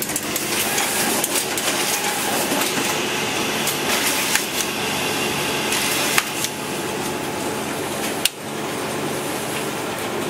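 Large Océ photocopier running a copy job, its feed and transport mechanisms whirring and clattering as paper moves through. It starts abruptly, with a sharp click about six seconds in and a brief dip just after eight seconds.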